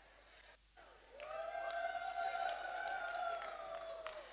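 A person's long, high-pitched whoop, starting about a second in and held for nearly three seconds before fading.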